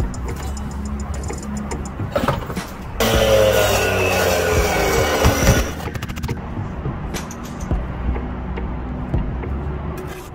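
A power drill driving in a fastener to fix a galvanized metal brick tie to the wall. It runs for about three seconds, from about three seconds in, its pitch falling as it goes. Background music plays throughout.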